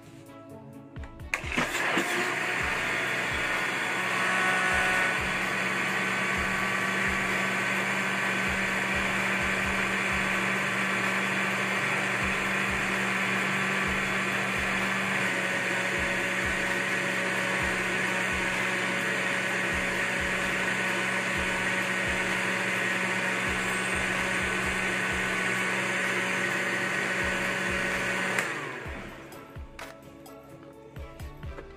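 Countertop blender running steadily, blending chilled cream and chocolate condensed milk into an ice-cream base. It starts about a second and a half in and winds down just before the end.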